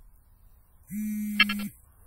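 The survey controller gives a short, flat electronic buzz tone lasting just under a second, starting about a second in. It signals that a one-second rapid-point GNSS measurement has completed.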